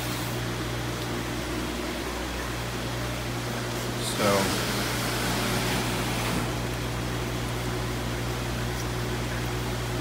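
Steady low hum with an even hiss, from the room's air conditioning and equipment. The hiss grows louder for about two seconds around the middle.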